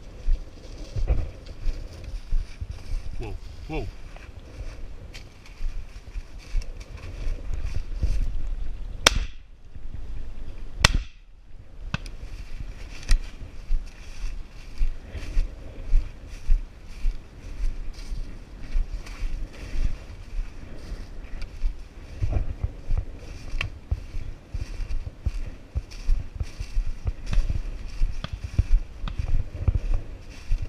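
Footsteps crunching through dry corn stubble, then two shotgun shots a little under two seconds apart about a third of the way in.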